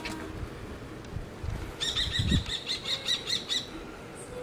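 Bird of prey calling: a rapid series of about ten shrill, even notes, about five a second, starting about two seconds in and stopping shortly before the end, with a few low thumps.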